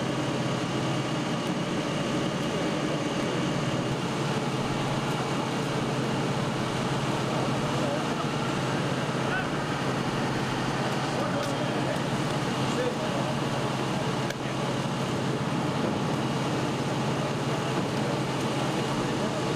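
Steady engine and traffic noise with indistinct voices of people nearby.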